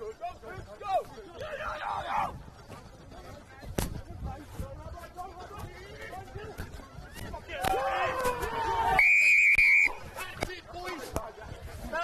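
Rugby referee's whistle: one long, steady blast about nine seconds in, just after a burst of players' shouting, signalling the try. Scattered calls from players on the field.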